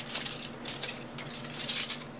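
Aluminum foil crinkling as a small strip of it is handled by hand: a loose run of small crackles.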